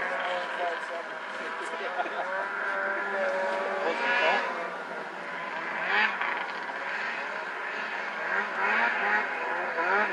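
Snowmobile engines revving in the distance, their pitch rising and falling again and again as the throttle is worked.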